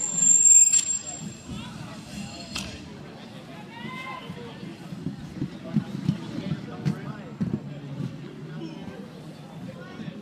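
Spectators' voices calling out and cheering, loudest in the first second. Under them runs a steady low rumble of inline skate wheels rolling on the wooden rink floor, with a few sharp clicks.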